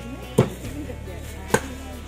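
Two cleaver chops through a raw whole chicken onto a round wooden chopping block, about a second apart, the first one louder.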